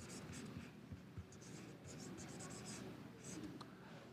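Faint scratching of a felt-tip marker on paper in a series of short strokes as a Chinese character is written by hand.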